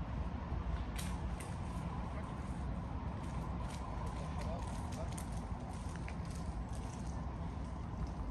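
Outdoor street ambience: a steady low rumble with scattered light clicks and faint voices.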